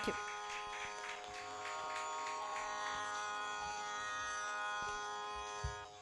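A steady, quiet drone with many held overtones from the stage sound system, unchanging throughout, with a soft low thump near the end.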